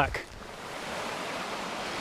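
Steady rush of a small brook's running water, swelling in during the first second.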